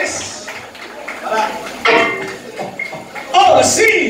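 People's voices talking and calling out in a club hall, in separate bursts, with a loud falling shout near the end.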